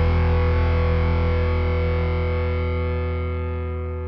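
Outro music ending on a single held, distorted electric guitar chord that rings on and slowly fades out.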